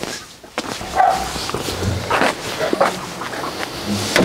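A dog barking a few times, in short separate barks.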